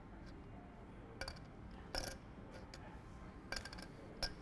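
Poker chips clicking against each other a few times, with a short cluster of clicks near the end, over a low steady room hum.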